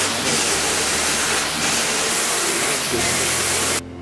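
Envelope-making machines running with a loud, steady hiss and a low hum. The noise drops away sharply near the end.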